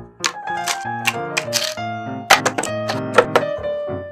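Light piano music over a series of sharp taps and thunks, several in quick succession, as pieces of cut corrugated cardboard are set down on a plastic cutting mat.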